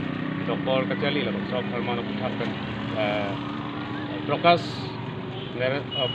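Speech in short phrases, with a louder sharp sound about four and a half seconds in, over a steady low hum.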